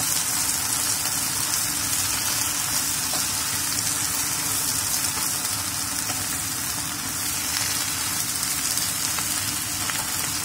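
Kailan (Chinese broccoli) and garlic sizzling steadily in oil in a frying pan over high heat.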